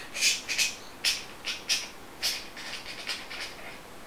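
A man stuttering in a block on the first sound of "trying": a run of short, breathy "t" bursts, about two a second, with no voice in them, before the word comes out.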